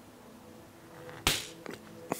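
A single sharp click about a second in, then a couple of fainter ticks: small parts of a radio-controlled car's sway bar link being handled on a hard bench.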